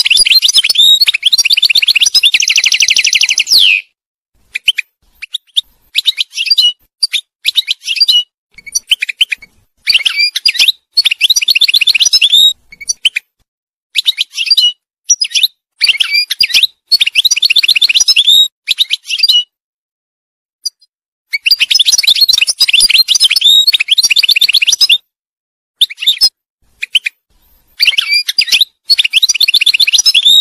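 European goldfinch singing: high, tinkling twitters and fast trills in phrases a few seconds long, separated by short pauses. A dense, rapid trill comes in the first few seconds.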